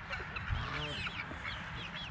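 Mixed backyard poultry flock calling faintly: short high chirps throughout, and a brief low call about half a second in.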